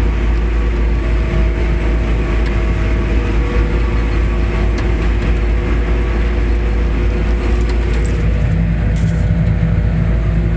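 Forage harvester running under load as it chops corn with the kernel processor engaged, heard from inside the cab: a steady, loud machine drone with a deep rumble and several constant tones. A lower hum grows stronger near the end.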